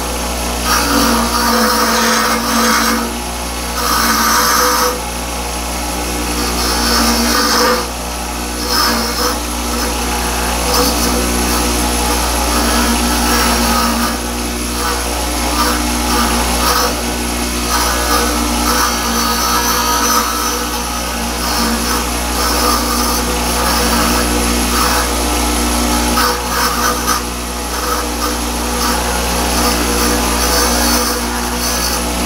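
Bench grinder running with a diamond dresser being moved across the face of the spinning grinding wheel: a steady motor hum under a gritty scraping that swells and fades as the diamond cuts, truing the wheel face flat and parallel.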